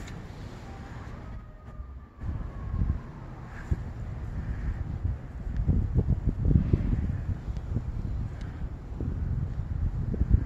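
Wind buffeting the microphone: an uneven low rumble in gusts that grows heavier in the second half.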